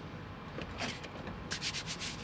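Rubbing and scuffing of nitrile-gloved hands handling plastic petri dishes on a stainless steel bench, in two short rasping passes, the second near the end. Under it runs the steady hum of the air purifier's fan.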